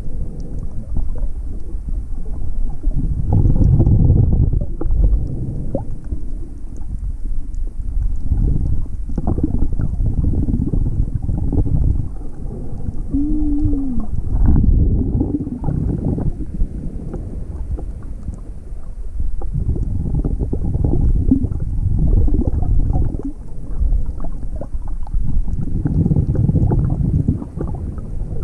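Muffled underwater rumble from a submerged action camera while snorkelling: low, churning water noise that swells and fades in irregular waves every few seconds. A brief squeaky pitched sound comes about halfway through.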